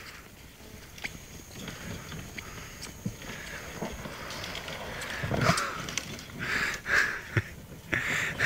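A golf cart driving across grass, its sound growing louder from about the middle, with a few sharp knocks along the way.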